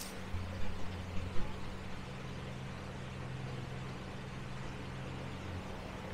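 A steady low mechanical hum, like an engine or motor running, with a few light clicks in the first second and a half.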